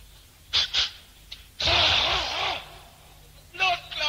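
A dancehall deejay's vocal sound effects on a live sound-clash tape: two short sharp hissing bursts, then a louder rough burst lasting about a second, in the manner of imitated gunfire.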